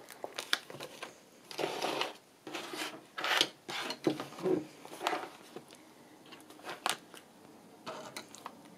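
Stiff paper pages of a handmade accordion journal being pulled out and handled: irregular rustling and rubbing, the louder rustles in the first half.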